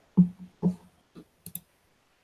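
Four short clicks and knocks from handling at a computer desk, the first two the loudest.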